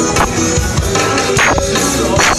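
Live zydeco band playing loudly, with drum kit, electric guitars and keyboard over a steady dance beat.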